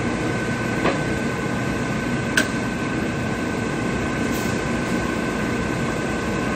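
Cincinnati Bickford radial arm drill running: a steady mechanical hum with an even high whine. Two sharp clicks, about a second in and again, louder, a little past two seconds.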